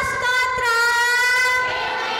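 A woman singing one long held high note, dipping slightly in pitch about halfway and breaking off near the end.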